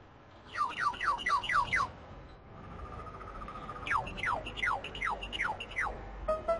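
Bird-like chirping: two runs of quick, falling chirps, about five a second, with a steady held whistle between them.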